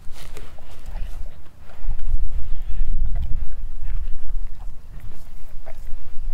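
Doberman eating raw meat off a wooden cutting board: irregular wet chewing and smacking of the jaws, ending with her nose and tongue working the empty board.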